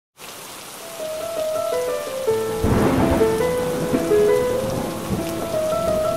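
Steady rain with thunder rumbling in about two and a half seconds in, under a slow melody of held notes.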